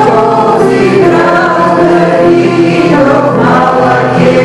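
Congregation singing a hymn together in long, sustained notes.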